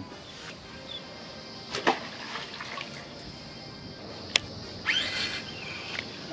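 Light water splashing and dripping beside a fishing boat: a short splash a couple of seconds in and a longer one near the end, with a single sharp click just before it.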